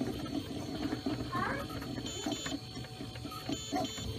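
Ultimaker 3D printer running mid-print: the print head's motors whir and buzz in short, shifting tones as the head moves back and forth over the bed.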